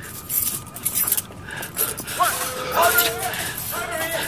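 A bunch of keys jangling and clinking as a man fumbles at a door lock. His muttering voice comes in over it from about two seconds in.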